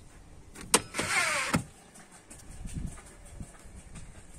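A sharp click, then a short whirring slide of about two-thirds of a second with a falling pitch, ending in a second click: a car boot's roller luggage cover running on its spring.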